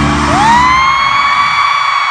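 A fan's long, high-pitched scream, close to the microphone, that swoops up in pitch just after the start and is then held, over a screaming stadium crowd. The band's music fades out beneath it about a second in.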